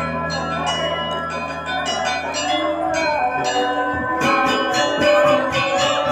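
Balinese gamelan playing: bronze metallophones and gongs ringing. A low tone is held through the first four seconds, then quicker struck notes take over.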